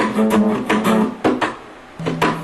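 Acoustic guitar strummed in a quick rhythm of chords, several strums a second, breaking off to a lull near the end.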